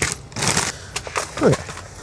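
A few short knocks and rattles of bench handling as a clear plastic organizer box full of metric bolts is set down, followed by a small cardboard box being picked up. A man says "okay" about one and a half seconds in.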